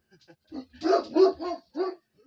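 A dog barking, about five quick barks in a row, in alarm at someone moving in the dark.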